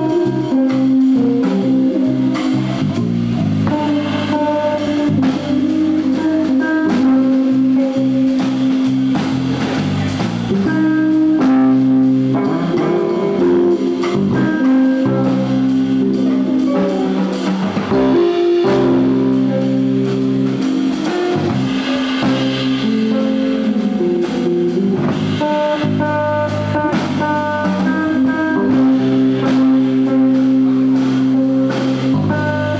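Live instrumental jazz from two electric guitars, electric bass and drum kit, with the guitars playing melodic lines over the bass and drums.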